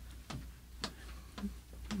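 A clock ticking quietly and steadily, about two ticks a second.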